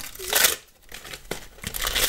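A Panini sticker packet torn open by hand, with a rip about half a second in, then the wrapper crinkling as the stack of stickers is pulled out.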